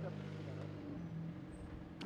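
Faint steady low-pitched hum.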